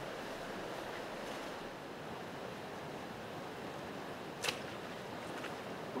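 Steady rush of flowing creek water, with a single sharp crack about four and a half seconds in: a bowfishing bow being shot at carp.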